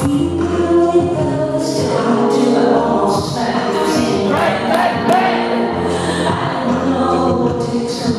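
A woman singing over sustained keyboard chords with a held low bass line, live music heard from the audience.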